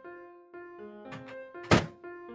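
Background keyboard music, with two light knocks a little past a second in and then one loud, short thunk near the end from work at a kitchen counter.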